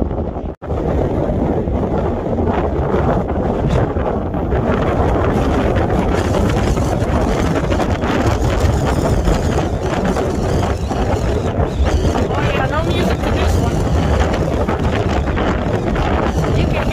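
Strong wind blowing across a handheld phone's microphone, a steady, loud buffeting rumble, broken by a brief dropout about half a second in.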